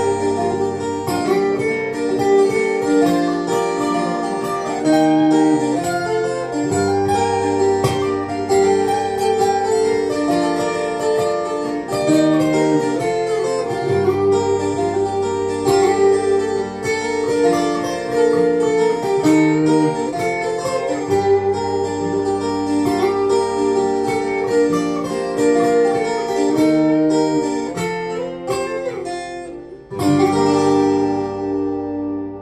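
Two acoustic guitars playing together, one strumming chords while the other picks a melody line over them, the bass of the chord changing about every seven seconds. The sound dips briefly right at the end.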